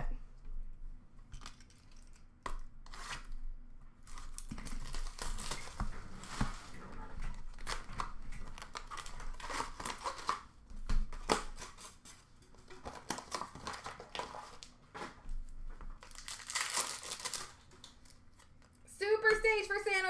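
Trading-card pack wrappers being torn open and crinkled, with cards handled and shuffled; the rustling comes in irregular spells, with one of the loudest a little past the three-quarter mark.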